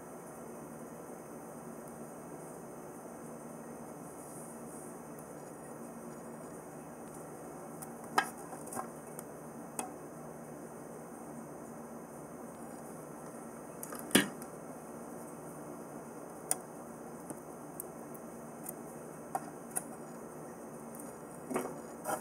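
Quiet steady room hiss with a few scattered sharp clicks and taps from a clear plastic box frame being handled, the loudest about fourteen seconds in.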